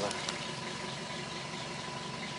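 Steady rushing background noise with a faint constant high hum, and a couple of faint ticks just after the start.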